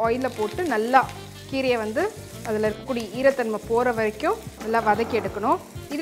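Chopped gongura (sorrel) leaves sizzling and frying in hot oil in a pan as they are stirred. Over it runs a loud pitched melody with sliding notes and a low pulsing bass.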